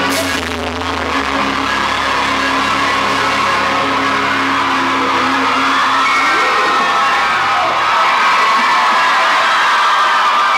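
A live rock band's last chord struck with a crash and left ringing, fading out over about seven seconds, while a concert crowd cheers and screams, growing louder as the chord dies away.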